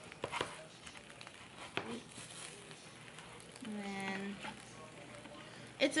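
A metal or plastic spatula clicking and scraping against a nonstick frying pan as it works under a slice of bread set on egg, with a few sharp clicks in the first two seconds. About four seconds in, a short hummed "mm" from a person's voice.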